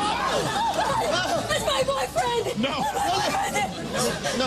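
Several people talking and exclaiming over one another at once, an excited jumble of overlapping voices with no words standing out.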